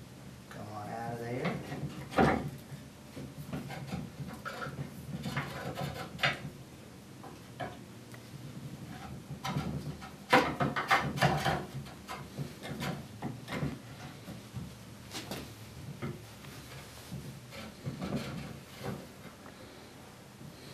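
Hand brace turning an auger bit as it bores into the wooden arm rail of a Windsor chair: irregular creaks, clicks and scraping of the bit cutting wood. Louder clusters come about two seconds in and again around ten to eleven seconds in.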